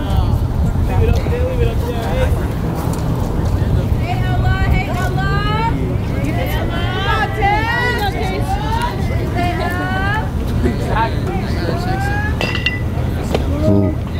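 Distant voices from players and onlookers calling out on and around the field, in several short spells, over a steady low rumble.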